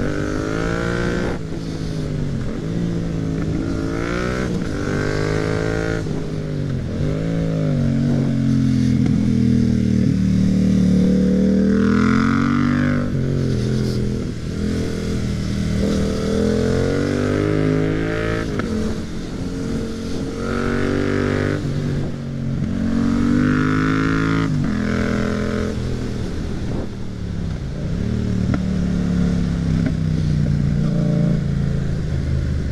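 Yamaha MT-07's 689 cc parallel-twin engine accelerating and slowing repeatedly on a winding road, its pitch climbing and then dropping again several times, with wind noise beneath.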